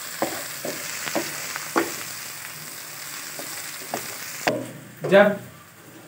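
Chopped onions and whole spices sizzling in oil in a kadai while a wooden spatula stirs them, knocking and scraping against the pan several times. The sizzle cuts off suddenly about four and a half seconds in.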